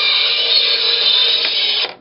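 A song from an iPod played through a voice changer chip and its small speaker, pitch-shifted into a harsh, high-pitched buzz. It cuts off suddenly just before the end.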